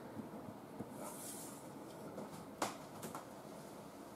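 Quiet room tone with a few faint light clicks, the loudest a little past halfway, and a brief soft hiss about a second in.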